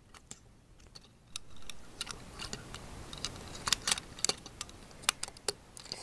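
Small plastic LEGO pieces being handled and fitted together: irregular sharp clicks and clatters, getting busier about a second and a half in, over a low rubbing noise.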